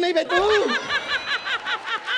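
A woman laughing hard in a quick run of high-pitched "ha-ha" bursts, about eight a second, just after a short spoken word.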